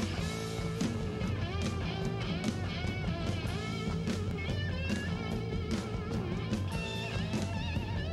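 Live rock band playing an instrumental passage: an electric guitar played with a slide, its notes gliding and wavering in pitch, over bass guitar and drums with cymbal hits.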